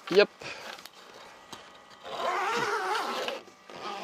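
Zip of a mesh mosquito screen being pulled along a van's door frame, about two seconds in: a rasp lasting a little over a second, its pitch wavering with the speed of the pull.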